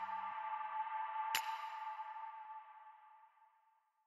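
Background music ending: a low bass line stops soon after the start, leaving a sustained high ringing tone that fades out to silence about three seconds in. A single sharp click is heard partway through.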